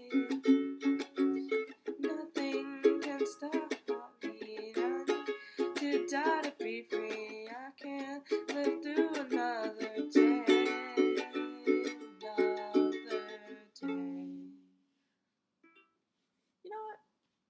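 Waikiki Ukulele Company ukulele strummed in repeated chords, with a soft voice singing over it. Near the end the strumming stops and the last chord rings out and dies away.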